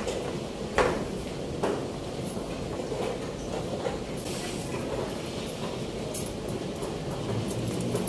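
Two sharp clacks of a chess move being played on the board, about a second apart near the start, over a steady background room noise of the playing hall.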